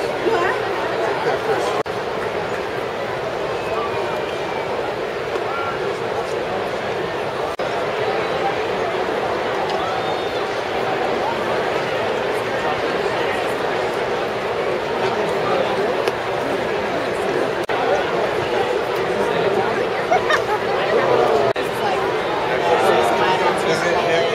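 Ballpark crowd chattering in the stands: many voices talking at once in a steady babble, a little louder near the end.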